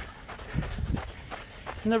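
Footsteps on a dirt path: a few soft, low thumps as the person recording walks along.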